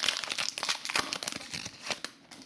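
Foil wrapper of a 2021 Panini Absolute football card pack crinkling in the hands as the pack is opened, in quick irregular crackles that die down near the end.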